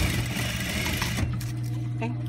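Industrial sewing machine stitching a seam, then stopping a little over a second in. Its motor keeps up a steady low hum afterwards, with a few light clicks.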